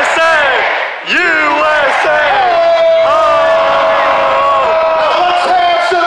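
Crowd chanting 'USA!', then, about a second in, a long shout held for about four seconds, followed by more crowd shouting.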